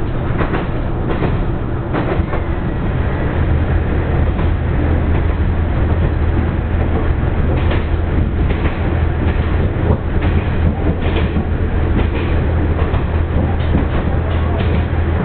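Diesel railcar heard from inside the passenger cabin, with a steady low engine drone, running noise and scattered rail-joint clicks. The drone gets louder partway through as the train runs into a tunnel.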